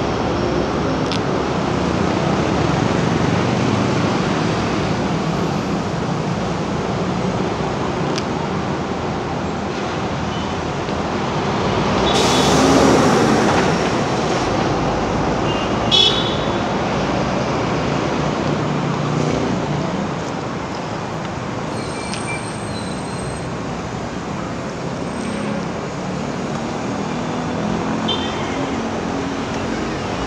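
Street traffic at a busy intersection: cars and motorcycles pass steadily. One vehicle swells loud as it goes by a little before halfway, followed by a short sharp horn toot.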